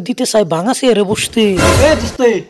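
A man's voice speaking in quick phrases, then, about one and a half seconds in, a loud, rough roar with a deep rumble that runs to the end.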